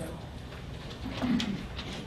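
Meeting-room background hum with one brief, low, muffled voice sound, like a murmur or 'hm', about a second in, and a faint click.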